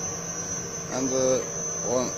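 An electric motor driving a generator runs steadily under about a kilowatt of lamp load, giving a low electrical hum and a constant high-pitched whine.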